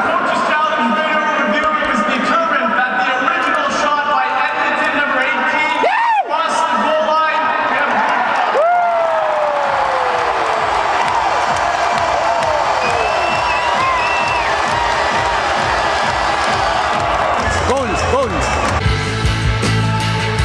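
A referee announces a video-review decision over the arena's public-address system, echoing through the hall, followed by the crowd's reaction and arena music. A rock track with a heavy beat starts near the end.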